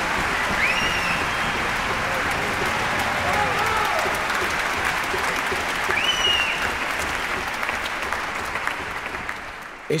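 A large audience applauding steadily, the applause dying away over the last two seconds.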